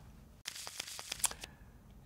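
A soft rustling hiss with a few small clicks, lasting about a second from half a second in, then a faint quieter hiss.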